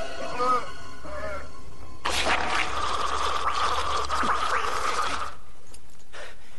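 Horror-film zombie vocal effects: wavering groans in the first second or so, then a harsh, rasping, sustained screech that cuts off suddenly a little past five seconds in.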